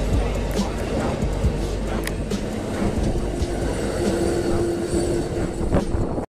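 Amtrak passenger train cars rolling past at speed: a steady rumble with scattered sharp clicks from the wheels over the rails, and a steady tone joining in over the second half.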